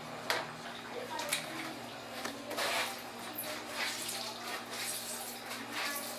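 Whey splashing and trickling onto a granite counter as a cloth-wrapped ball of fresh cheese curd is squeezed by hand, with a few light knocks.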